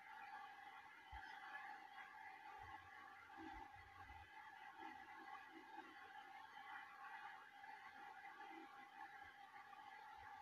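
Near silence: room tone with a faint steady high hum.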